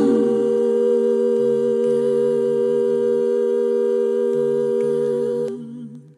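Isolated, unaccompanied layered vocal tracks holding a sustained final chord in harmony, with a lower voice moving underneath. The upper voices stop about five and a half seconds in and the rest fades out.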